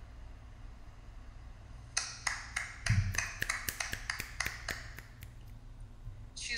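An irregular run of about fifteen sharp taps or clicks, starting about two seconds in and lasting about three and a half seconds, with a low thump near the start of the run, over a steady low hum.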